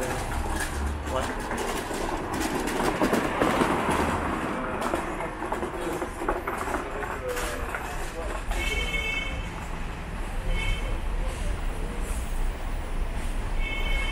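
City street ambience: traffic going by on the road, with a swell of vehicle noise a few seconds in and voices of passers-by. Short high-pitched chirps sound about eight seconds in, briefly again a couple of seconds later, and once more near the end.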